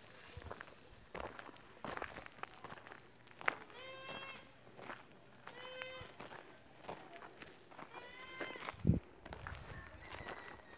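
A goat bleats three times, each call about half a second long, over footsteps on dry dirt ground. A louder thump comes near the end.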